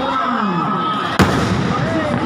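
A single sharp firecracker bang just past the middle, over a large crowd shouting.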